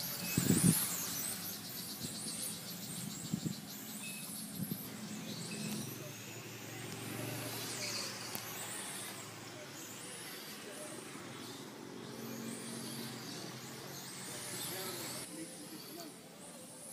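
Radio-controlled on-road cars running laps, their small motors giving repeated high-pitched whines that rise and fall in pitch as they speed up and slow down. A short, loud low thump comes about half a second in.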